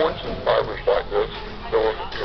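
A high-pitched voice in short, rapid syllables.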